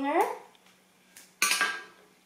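One sharp metallic clack from a pair of craft scissors about one and a half seconds in, with a short ringing tail and a faint click just before it.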